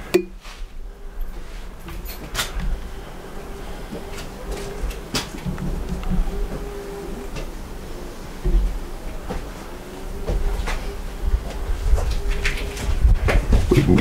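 Wind gusting on the camcorder's microphone, an uneven low rumble, with a faint steady hum underneath and a few short sharp clicks scattered through.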